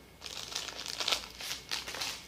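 Paladar powdered-juice sachets crinkling as they are handled, an irregular run of short crackles.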